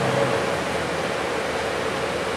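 Cabin noise inside a moving Mercedes-Benz Citaro city bus: a steady rushing road and cabin noise. The engine's hum fades out about a quarter of a second in.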